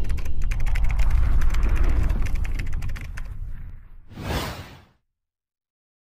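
Intro sound effect: a fast run of typewriter-like key clicks over a low rumble, fading out around three seconds in, then a brief whoosh just after four seconds that ends abruptly about five seconds in.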